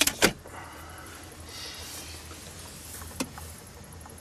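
Belongings in plastic bags being handled: a few sharp knocks and clatter at the start, a rustle of plastic about one and a half seconds in, and one more sharp knock a little past three seconds, over a low steady hum.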